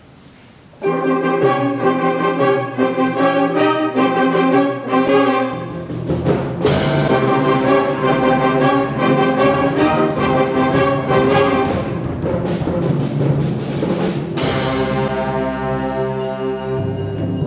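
A concert band of brass, woodwinds and percussion comes in loud about a second in, playing sustained chords over low brass and drums. Two crashes ring out, about six and a half seconds in and near the end.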